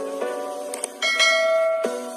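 Subscribe-button sound effect: a quick double mouse click, then a bright notification bell chime about a second in, the loudest sound here, ringing on over background music of short notes.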